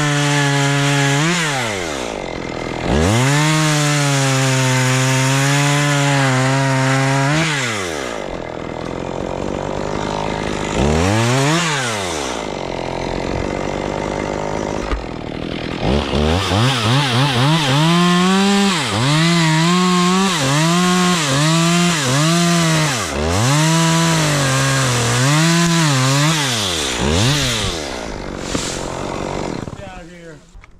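Chainsaw cutting oak limbs, its engine revving up and dropping back again and again. There is one long held cut in the first quarter, then a quick run of short revs and throttle blips in the second half, before the saw falls away at the end.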